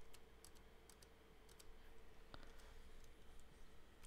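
Near silence with a few faint, scattered clicks at the computer, the clearest about two and a half seconds in, over a faint steady hum.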